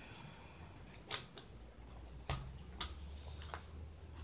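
Four sharp plastic clicks, spaced unevenly over a few seconds, from a tripod being handled: its leg-lock and adjustment parts snapping and knocking. A faint low hum runs underneath.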